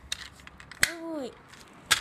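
Two sharp plastic clicks about a second apart as the broken engine cradle of a toy car is snapped back into place.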